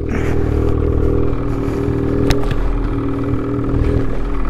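Ski-Doo 850 two-stroke snowmobile engine idling steadily while the sled sits stuck in deep snow, with one sharp click a little over two seconds in.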